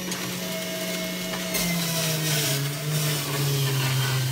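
Electric juicer motor running with a steady hum. About one and a half seconds in, the hum drops lower and a rough hiss joins as vegetables are pushed in and the motor takes the load.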